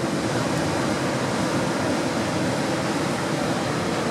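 Ocean surf breaking on the beach: a steady wash of noise with a faint steady hum underneath.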